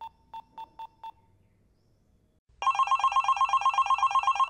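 A quick run of about six short, even beeps as a call is placed on a mobile phone, then a pause. About two and a half seconds in, a phone starts ringing with a fast, trilling electronic ring.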